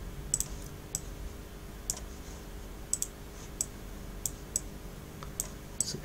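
Computer mouse buttons clicking: about a dozen short, sharp clicks at irregular intervals, some in quick pairs, over a faint low steady hum.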